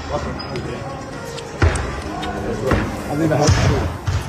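Men's voices talking, with a few sharp thuds about a second and a half in, near three seconds and again shortly before the end.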